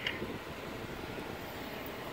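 Jeep Wrangler Sahara's engine running low and steady, heard from inside the cab as the Jeep creeps down the slickrock drop.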